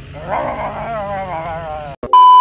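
A boy imitating a revving engine with his voice: a raspy growl, then a wavering drawn-out tone. It cuts off suddenly at the end.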